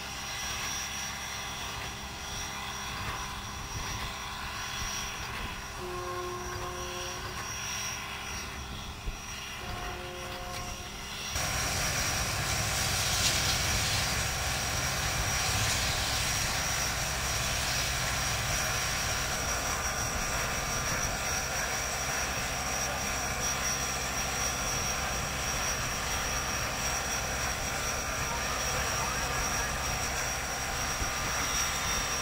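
Class QJ steam locomotives standing in a depot: a steady hiss of steam over a low rumble, which turns suddenly louder about eleven seconds in. A few faint short tones sound in the quieter first part.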